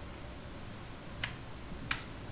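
Two sharp keystrokes on a computer keyboard, about two-thirds of a second apart, as a typed command is finished and run, over a faint low hum.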